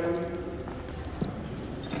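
Faint footsteps with a few soft taps over low room murmur.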